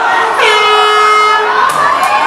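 Air horn sounded once, a single held note of a little over a second that settles in pitch just after it starts, signalling the end of the round. Crowd chatter continues around it.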